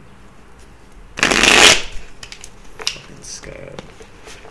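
A deck of tarot cards shuffled by hand: one loud burst of shuffling lasting about half a second just over a second in, then lighter clicks and taps of the cards.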